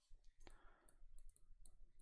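Faint clicks and taps of a stylus on a writing tablet while digits are handwritten, over near silence.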